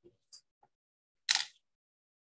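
A few brief clicks and short hissy noise bursts, the loudest a sharp burst about a second and a half in.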